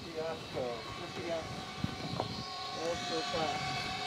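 Faint, scattered voices over a steady machine hum in a large warehouse, with one light click about two seconds in.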